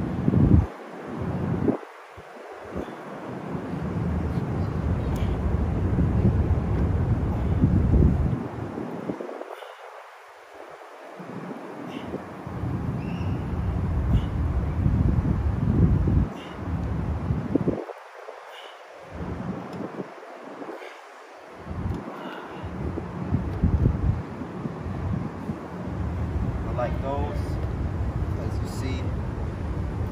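Wind buffeting a phone microphone: a gusty low rumble that swells and fades, dropping away for a couple of seconds about a third of the way in and again about two-thirds through.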